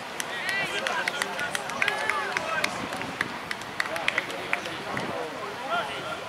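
Indistinct voices of several people talking and calling out at a distance across an open field, with scattered short, sharp clicks.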